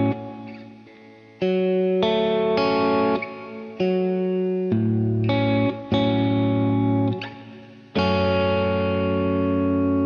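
Electric guitar playing a phrase of picked chords, including an F-sharp minor voicing in first inversion with the third in the bass. About seven chords are struck in turn; each rings and fades, and some are cut short by the next.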